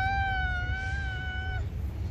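A child's voice holding one long, high-pitched squeal with a slight wobble in pitch, which cuts off about one and a half seconds in. A steady low rumble runs underneath.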